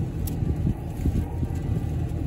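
Steady low rumble of an idling vehicle engine heard inside the cab, with a few faint clicks of a small plastic toy figure being handled.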